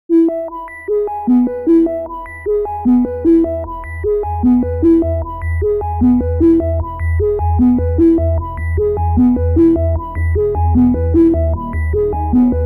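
Electronic instrumental music: a repeating synthesizer arpeggio of short notes over a pulsing bass, which grows louder about four seconds in.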